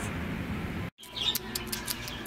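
Low traffic hum, then after a sudden cut a sun conure giving a run of short, sharp high-pitched chirps.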